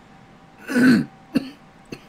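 A man coughs to clear his throat, one loud cough about half a second in, followed by a short, sharp second catch.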